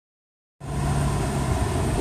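Tuk-tuk's engine running with road noise as it rolls along, a steady low hum that starts suddenly about half a second in.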